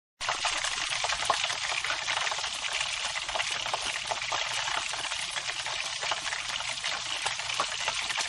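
Steady, dense sizzling and crackling of food frying in hot oil.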